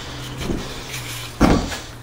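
Handling noise as a plastic light switch is picked up, with a single sharp knock about one and a half seconds in over a low rumble.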